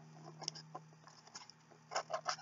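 Faint scratching and a few light clicks of a small box being handled and opened by hand.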